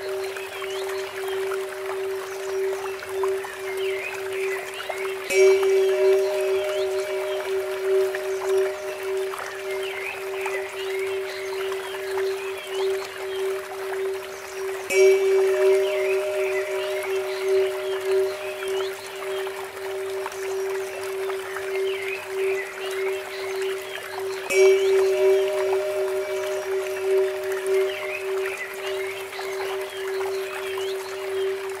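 A steady 432 Hz tone drones under a Tibetan temple bell that is struck three times, about ten seconds apart, each strike ringing out slowly. Small birds chirp and water trickles from a bamboo fountain underneath.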